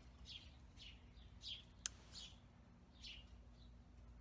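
Faint bird chirps: about five short, high chirps, each falling in pitch, spread unevenly through the stretch, with a single sharp click a little before the middle.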